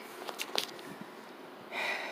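A few faint mouth clicks, then near the end a short, audible breath drawn in by a woman about to sing.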